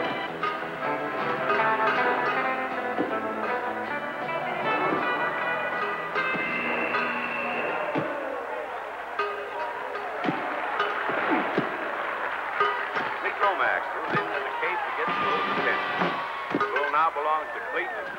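Background film music with held notes for the first several seconds, then a rodeo crowd shouting and yelling without clear words, with scattered thumps, over the second half.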